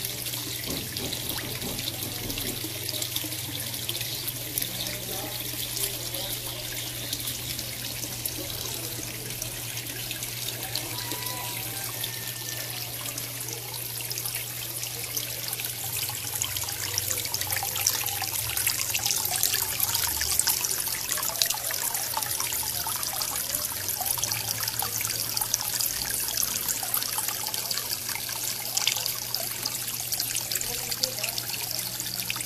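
Water trickling steadily into an aquaponics fish tank, a little louder in the second half, over a steady low hum.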